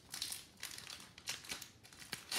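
Foil trading-card pack wrapper crinkling in hand in a few short, quiet bursts, the strongest about a quarter of a second in.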